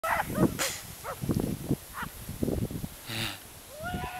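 A person laughing in short, yelp-like bursts, with a brief hiss a little after three seconds.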